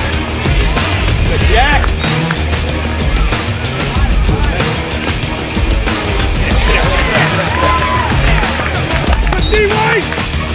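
Loud background music with a heavy, steady beat and deep bass.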